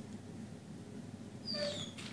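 A short, high-pitched animal call with a falling pitch about a second and a half in, over faint room noise.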